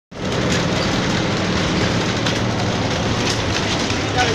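Steady drone of a bus engine with road and wind noise, heard from inside the coach as it travels at speed.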